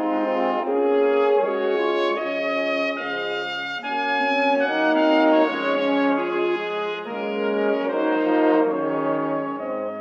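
Intro theme music played by a brass section: slow, sustained chords of several horns together, the harmony changing about once a second.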